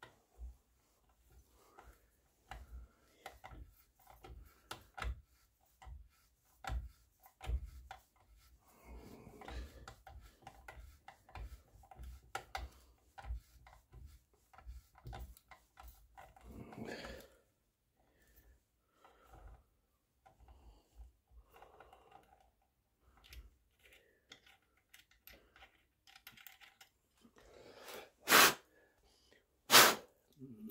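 Small metal parts and hand tools clicking, tapping and scraping against each other and the wooden rifle stock while a peep sight is fitted, with two sharp, loud knocks near the end.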